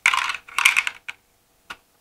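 An optical fiber cleaver being set down into its slot in a toolbox tray: a quick run of hard clattering and clicks in the first second, then two single clicks.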